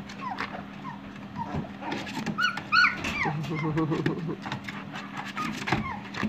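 Very young standard poodle puppies, about two and a half weeks old, whimpering and squeaking: a string of short, high calls that rise and fall in pitch.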